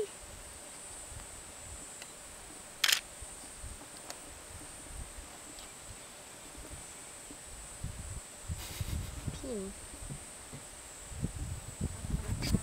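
Handheld camera handling noise: a sharp click about three seconds in, then low knocks and rumbling in the last few seconds as the shot is moved, over a steady high-pitched hum.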